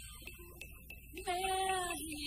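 Cải lương opera singing: after a brief lull with a few faint clicks, a woman's voice comes in about a second in, sliding up onto a long held note.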